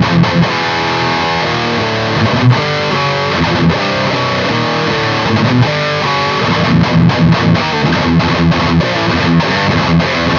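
Distorted high-gain electric guitar through a Diezel Hagen tube amp on channel 3, driven by a Lichtlaerm King in Yellow overdrive with both of its overdrive sides stacked and the highs turned up. The guitar plays rhythmic low chugging, then a run of held melodic notes from about one to six seconds in, then chugs again.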